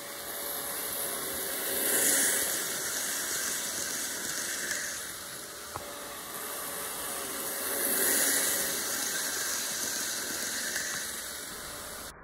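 N scale model train running on its track, Amtrak Superliner passenger cars rolling by with a high, steady hiss of metal wheels and drive. The sound swells twice, about two and eight seconds in, as the train comes close, and there is a single click a little before six seconds.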